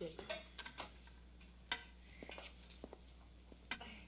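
Light clinks and clicks of glass and metal, like medicine vials and instruments being handled on a tray, scattered irregularly with the sharpest click about two seconds in.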